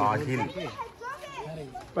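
Speech only: voices talking, children's voices among them.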